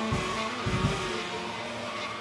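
Live band playing saxophone, electric guitar and drums together in a dense, noisy texture, with two heavy low hits, one just after the start and one near the middle.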